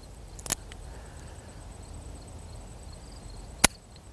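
Rock Island Armory AL22M stainless .22 Magnum revolver being dry-fired in single action on spent cases. A click about half a second in comes as the hammer is cocked. A sharper, louder click near the end comes as the trigger breaks and the hammer drops.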